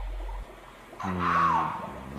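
Radio-drama sound effects: a deep rumble that cuts off about half a second in, then, about a second in, a loud growling animal-like cry whose pitch bends and falls.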